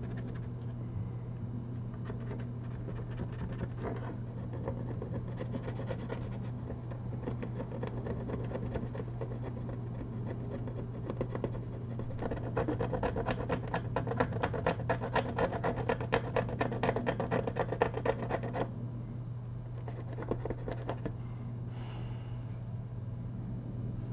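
A plastic spudger scraping and rubbing along the glued edge of a laptop screen panel, working at the adhesive. Partway through, the strokes become quicker and louder for about six seconds, then ease off. A steady low hum runs underneath.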